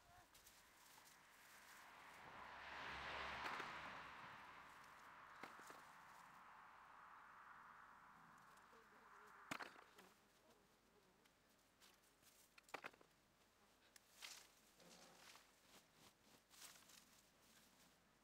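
Faint scraping and a few light knocks of bare hands digging potatoes out of loose soil, with a faint rush that swells and fades over the first few seconds.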